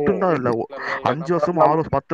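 A person talking continuously over a live voice-chat audio stream.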